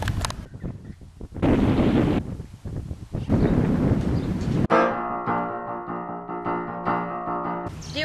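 Wind buffeting the microphone in uneven gusts for the first few seconds, then, cut in sharply about two-thirds of the way through, a held music chord of several steady notes that sounds for about three seconds and stops abruptly.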